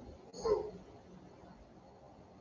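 A single brief vocal sound, under half a second long, about half a second in, over faint room noise.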